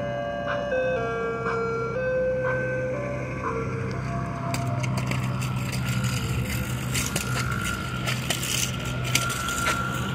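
Ice cream truck's chime playing a melody of stepped notes for about the first four seconds, over the truck's steady engine hum. After the tune stops the engine runs on, with scattered sharp clicks.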